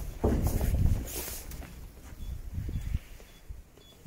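Low rumbling footstep and handling noise that fades away, with faint, short, high electronic beeps in the second half.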